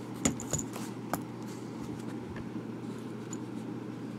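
A metal-bodied ballpoint pen and a plastic Bic pen being handled and laid down on paper: three light clicks with a short metallic clink in the first second or so. After that only a low steady hum.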